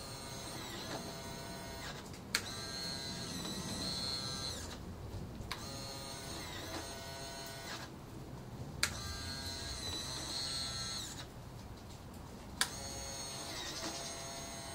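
Electric retractable landing gear of an X-Swift model glider cycling up and down several times: a small geared motor whines for about two seconds per stroke, its pitch sliding as it loads and unloads, with short pauses between strokes and a sharp click as the gear reaches an end stop.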